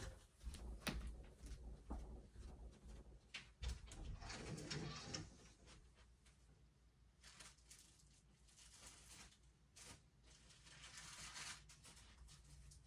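Near silence in a small room, with a few faint knocks and a brief rustle in the first five seconds.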